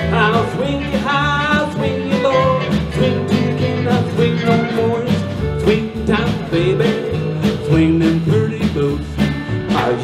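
Live western swing band playing an instrumental break with a steady swing beat: fiddle, steel guitar, acoustic and electric guitars, upright bass and drums.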